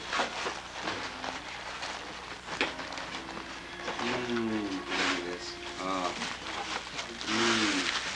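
Paper and plastic gift wrapping rustling and crinkling while a small present is unwrapped, with a louder rustle near the end. Voices talk quietly in the background.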